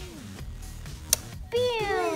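A single sharp plastic click about a second in as the toy Batmobile and its figure are handled, then a voice exclaiming loudly near the end.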